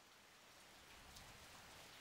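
Near silence: a faint steady hiss of outdoor ambience that grows slightly louder.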